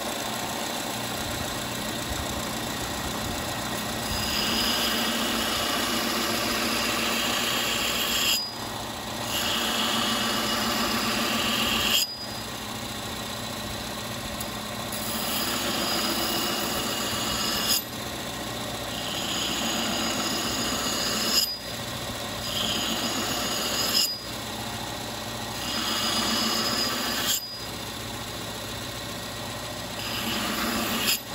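Delta bench belt sander running steadily with an 80-grit belt while the steel edge of a Cold Steel Competition Thrower axe head is ground on it. About six passes of a few seconds each lay a higher grinding hiss over the motor sound, each ending with a short dip as the blade is lifted off.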